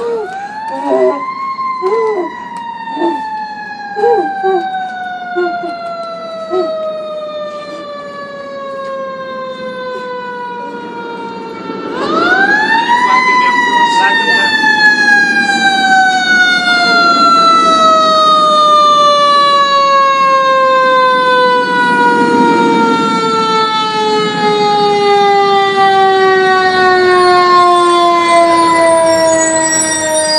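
Fire engine siren wound up twice, each time rising quickly to a high wail and then slowly winding down over many seconds, in the long coast-down of a mechanical siren. The second wind-up, about twelve seconds in, is much louder.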